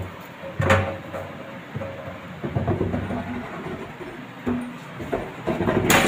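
Wooden cupboard door and its fittings being handled: a sharp knock about a second in, scattered rattles and scrapes through the middle, and a louder clatter at the very end.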